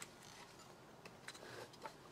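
Near silence: room tone with a few faint, light clicks of small objects being handled, about a second in and again near the end.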